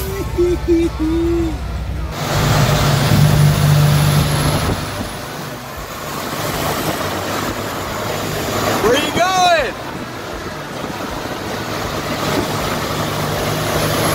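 Peterbilt 389 semi truck's diesel engine running with a steady low hum, heard from the cab. A brief rising-and-falling voice-like sound comes about nine seconds in.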